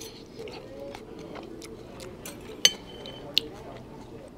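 Metal fork clinking against a ceramic bowl and plate: scattered small taps, and two sharper clinks with a short ring, about two and a half and three and a third seconds in.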